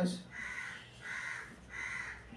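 A crow cawing repeatedly, about five short harsh caws evenly spaced a little over half a second apart.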